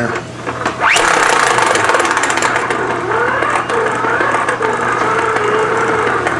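Small hand crank generator (dynamo) spun hard by hand, its gear train whining. The whine rises quickly about a second in, then holds a wavering pitch under a dense rattle of clicks as the crank speed varies.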